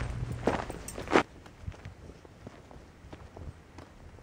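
Footsteps on dry, gravelly desert dirt close to the microphone: two loud crunches in the first second or so, then fainter scattered steps.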